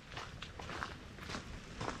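Faint footsteps on a gravel trail, about two steps a second.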